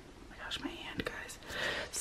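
Faint whispered speech, with a couple of light clicks.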